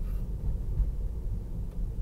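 Steady low tyre and road rumble inside a Tesla Model 3's cabin, rolling at about 20 mph.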